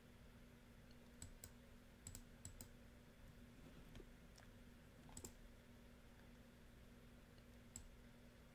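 Near silence broken by faint, scattered computer mouse clicks, about nine in all and bunched in the first few seconds, over a faint steady electrical hum.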